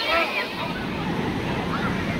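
Sea surf washing in, with wind buffeting the microphone and a beach crowd chattering; the voices are clearest in the first half second.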